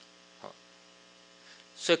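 Steady electrical mains hum in the microphone and sound system during a pause in speech, one constant tone with several steady overtones. A man's voice resumes near the end.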